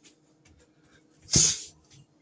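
A person's sharp, forceful exhale during an exercise repetition, once about a second and a half in, with a quiet room in between.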